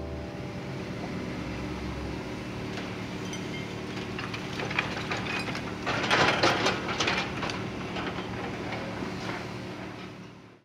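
Tracked excavator's diesel engine running steadily as its demolition grab tears at a building, with scattered knocks of falling debris. About six seconds in, a louder burst of crashing and clattering rubble and masonry lasts for a second or so.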